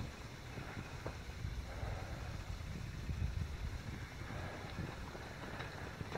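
Uneven low rumble of wind and handling on a handheld camera's microphone while walking, with a couple of faint clicks.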